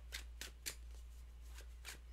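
Tarot cards being handled: a few brief, light papery flicks and rustles of the cards.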